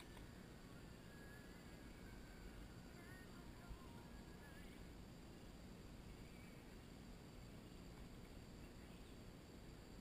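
Near silence: faint open-air ambience, with a few faint bird chirps a couple of seconds in.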